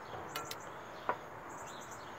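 Faint bird chirps over quiet background noise, with one soft knock about a second in.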